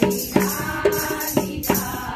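A group of women singing a Kumaoni Holi song together in unison, with hand claps and a dholak drum keeping a steady beat of about two strokes a second.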